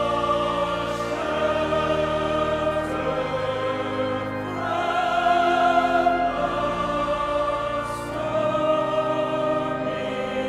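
Slow classical choral music: voices holding long chords over instrumental accompaniment, the harmony shifting every couple of seconds.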